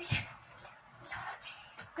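A child's feet thumping and shuffling on the floor as he dances: one thump just after the start, then faint scattered scuffs.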